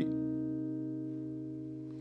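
A single chord on a clean electric guitar (a Sadowsky) ringing out and fading evenly: a D minor seven flat five, the two chord of C minor, with a very moody sound.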